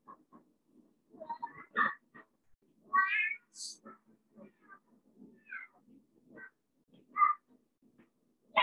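A young child's short, high whining cries, several in a row with a few fainter sounds between, played back through the audio of a shared video.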